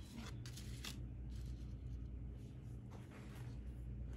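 Faint rustling and a few light taps of a tarot card being handled and laid on a tabletop, most of them in the first second, over a low steady hum.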